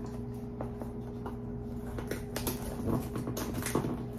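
Fingernails scratching and picking at the top edge of a cardboard box to open it. A run of small clicks and scrapes grows busier in the second half.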